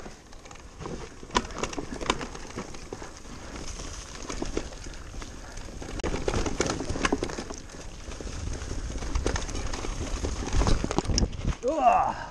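An electric full-suspension mountain bike riding fast down a dirt trail covered in dead leaves. The tyres roll over leaves and earth, with many sharp clicks and rattles from the bike over bumps. A low rumble of wind on the microphone builds in the last few seconds.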